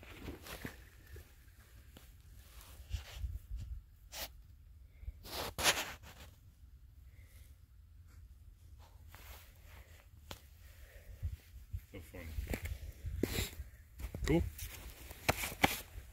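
A snowball thrown onto a thinly frozen pond strikes and skitters across the ice. It gives a few sharp clicks about four and five and a half seconds in and a cluster near the end, over a low wind rumble on the microphone.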